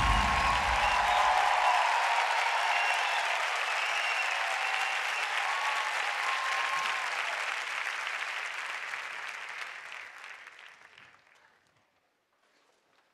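A studio audience applauding and cheering, with a few shouts, dying away over the last couple of seconds.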